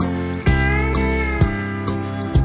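Instrumental break of a country song with no vocals: a steel guitar slides and bends between held notes over a steady bass and rhythm backing. A plucked bass note lands about once a second.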